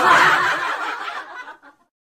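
A short burst of laughter, about a second and a half long, that cuts off suddenly.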